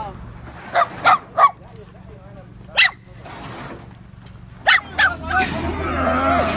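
Caged dogs barking: three barks in quick succession about a second in, one near three seconds and two more near five seconds, over a low steady hum.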